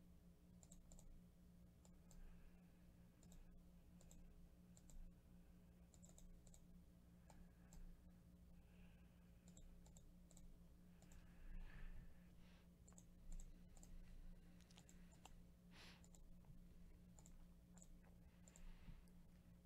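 Faint, irregular computer mouse clicks over near-silent room tone with a steady low hum.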